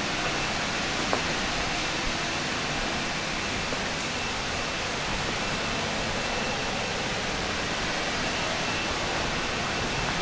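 Steady rushing noise with a faint high whine held steady above it, and no distinct events.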